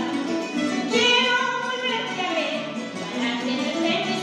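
A woman singing a song with guitar accompaniment, holding long notes.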